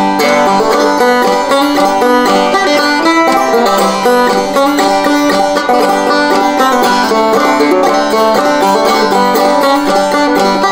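Five-string open-back banjo played clawhammer (frailing) style: a steady, rhythmic instrumental break of picked melody notes and brushed strums.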